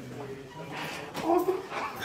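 Adult crying with emotion: short cries that bend in pitch, loudest just after a second in.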